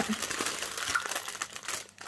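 Clear plastic packaging bags and cellophane wrap crinkling as they are handled. The crackle thins out in the second half and dies away near the end.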